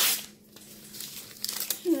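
Newspaper crinkling and rustling in the hands, with a loud rustle at the start and quieter crackling after it.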